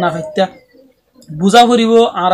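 A man's voice speaking, with a short pause of about half a second near the middle.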